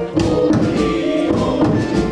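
Men's choir singing with instrumental accompaniment.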